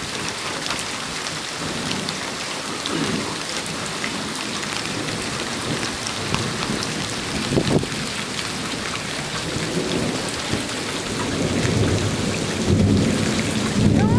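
Steady rain falling close by, with many individual drops ticking. A low rumble of thunder builds over the last few seconds.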